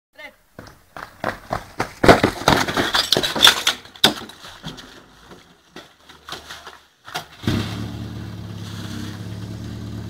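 Rapid metal clanks and knocks as suction hoses and couplings are thrown down and joined to a portable fire pump. About seven and a half seconds in, the pump's engine starts and runs steadily.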